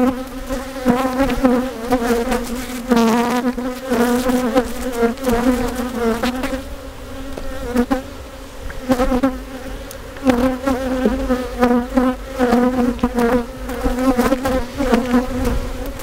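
Honeybees from an opened hive buzzing close to the microphone: a loud, wavering hum that swells and fades as the bees fly past, softer for a few seconds in the middle.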